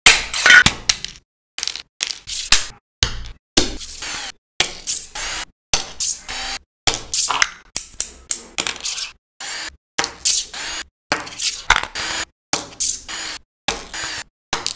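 Quick clicks, snaps and scrapes of small plastic toy parts being handled and pressed together, in a fast run of short, hard-cut bursts with dead silence between them.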